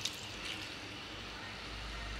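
Diced chicken breast with curry powder frying in oil in a nonstick pan, a faint steady sizzle.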